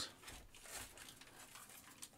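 Faint rustling of plastic wrap and soft rubbing against a foam insert as a wrapped collectible figure is slid out of its packaging.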